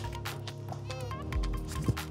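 Background music with a steady beat and held tones, with a short wavering, sliding tone about halfway through.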